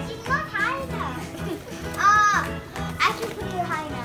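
Young children's voices, with a high drawn-out squeal about two seconds in, over background music.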